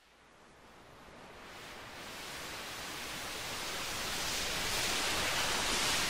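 Omnisphere synth patch 'Martian Oceans' from the Plugin Guru Omniverse library: a wash of synthesized wind-and-surf noise, like waves on a shore. It swells up from silence over about five seconds.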